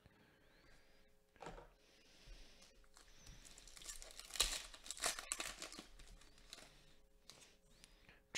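Faint rustling and clicking of glossy trading cards being handled and shuffled through by hand, a little louder around the middle.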